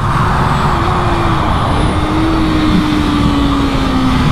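2018 Kawasaki ZX-6R's inline-four engine running at speed on track, its note falling slowly as the bike rolls into a corner. Heavy wind rush on the microphone underneath.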